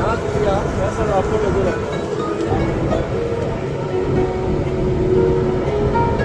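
Background voices and music with held notes over a steady low rumble.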